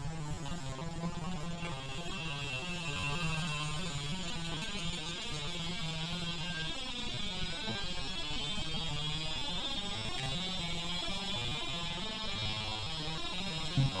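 Slowed-down, pitched-down sound of an opened Quantum 840AT IDE hard drive running, played at a quarter of its speed so the motor and platter noise becomes a low, wavering, music-like drone. A low hum comes and goes, with a thin rising whine early on and a click near the end.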